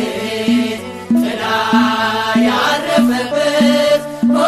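An Ethiopian Orthodox mezmur (hymn): a chanted vocal melody over a steady low beat of about one and a half beats a second, with a short lull about a second in.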